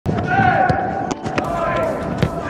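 A football being kicked, a few sharp thuds about a second apart, with voices calling out across the pitch.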